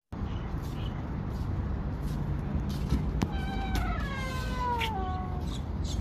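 A metal-framed glass door being pulled open: a sharp click of the latch, then a long hinge creak of about two seconds that slides slowly down in pitch.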